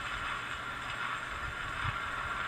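Steady surface hiss and low rumble of a 78 rpm shellac record on a Victrola 215 phonograph, the needle riding the silent end grooves after the recorded music, with a few faint low thumps.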